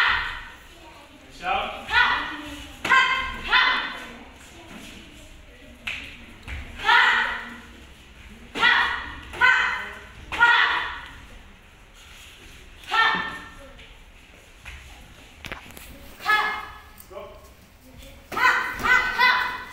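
Taekwondo sparring shouts (kihap): about a dozen short, sharp, high-pitched yells from the fighters as they attack, some coming in quick pairs. The yells ring in a large hall.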